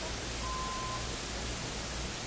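Steady hiss of an old recording's noise floor, with no handling sounds heard. A faint, brief high tone sounds about half a second in.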